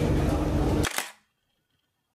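Steady low rumble inside a C830C metro train car, then a single sharp phone camera shutter click about a second in, after which the sound cuts out to dead silence.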